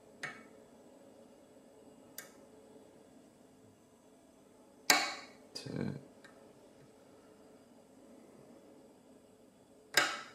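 Single-pin picking of a pin tumbler challenge lock with a hook pick: a few sharp metallic clicks from the pick and pins in the keyway, the loudest about halfway and at the end, with a short duller knock just after the middle click.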